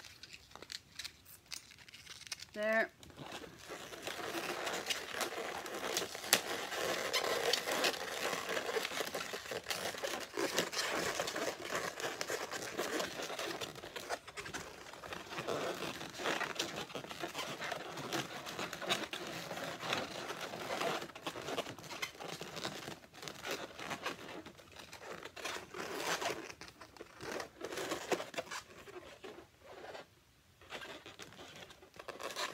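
Latex modelling balloons being twisted and worked together by hand, rubbing and squeaking against each other with small crinkly clicks. A short rising squeak comes about three seconds in.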